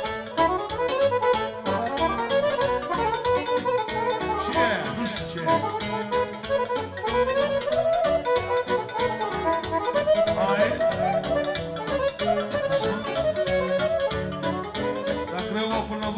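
Live piano accordion playing a dance tune with a steady beat behind it.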